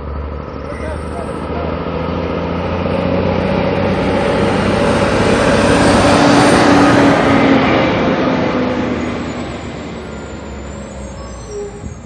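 A motor vehicle passing on the street: its engine and tyre noise grows louder, peaks about six to seven seconds in, then fades away.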